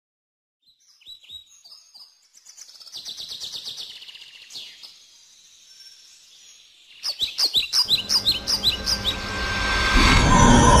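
Songbirds chirping and trilling, beginning about a second in. Around seven seconds in comes a quick run of repeated falling chirps, and a rising wash of sound swells beneath the birds toward the end.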